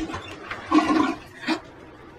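Toilet flushing, a rushing of water that swells and then fades, with a sharp click about one and a half seconds in as the bathroom door latch opens.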